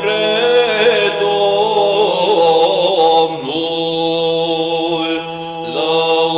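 Romanian Orthodox Byzantine-style chant in the seventh tone: a melismatic, ornamented vocal line sung over a steady held low drone (the ison).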